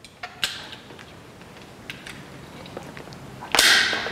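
A few faint taps, then one loud, sharp hit about three and a half seconds in: a nylon hammer tapping the inner olive (hose insert) into the end of a cut hydraulic disc-brake hose so that it seats fully.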